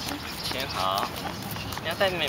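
Footsteps of several people walking on asphalt, with a child's brief high-pitched voice about a second in.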